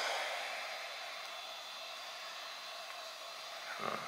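Steady, even hiss of background room noise, with no distinct event in it.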